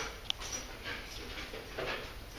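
Explosive detection dog panting and sniffing as it works a search, with a short high click about a third of a second in.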